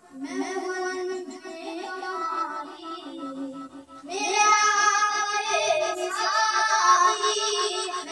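A boy singing an Urdu naat unaccompanied, holding long, ornamented melodic lines; the singing grows louder about halfway through.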